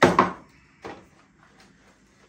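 Knocks and clicks of a long-reach drywall sander's hinged red plastic and metal arm being handled and swung upright: a loud double knock at the start, then a smaller click a little under a second in and a faint one later.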